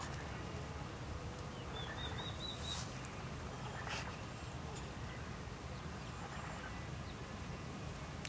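A bird gives a quick run of about five short, high chirps about two seconds in, over a faint steady low background noise.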